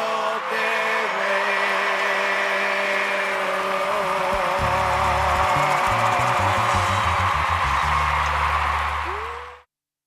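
Live Latin band music from a concert stage: held notes over a bass line that moves from about halfway through. The sound cuts off suddenly just before the end.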